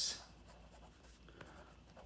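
Pen writing on lined notebook paper: faint scratching of the tip across the page as a word is written.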